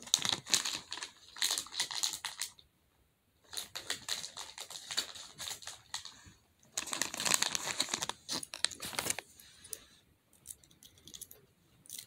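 Plastic pop tube fidget toys being stretched and squashed, giving a crinkly, crackling rattle in three bursts of a couple of seconds each, with faint plastic handling sounds after.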